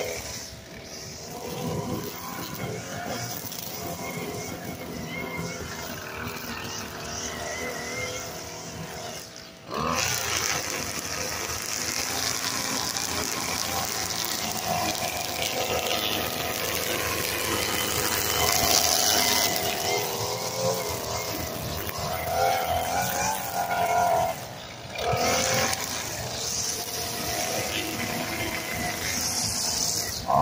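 String trimmer running at high speed while edging grass along a concrete sidewalk, its pitch wavering. It drops off briefly just before ten seconds in and again about twenty-five seconds in, then picks back up.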